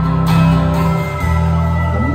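A live alt-rock band plays an instrumental stretch between sung lines, with strummed guitars ringing on sustained chords. The chord changes about a second in.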